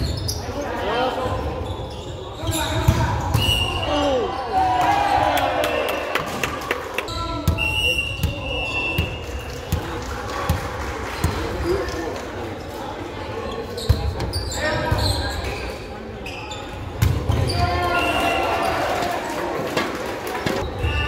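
Volleyball rallies in an echoing gymnasium: repeated sharp smacks and thuds of the ball off hands and the floor, sneakers squeaking on the gym floor, and players and spectators shouting between plays.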